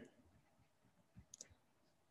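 Near silence: room tone, with a few faint clicks about a second in.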